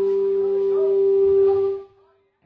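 A single loud sustained note held by a live rock band, steady in pitch with fainter wavering notes above it, cut off sharply near the end.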